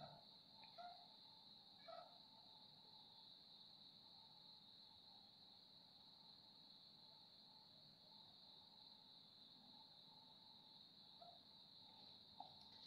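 Near silence: room tone with a faint, steady high-pitched whine and a few faint small ticks.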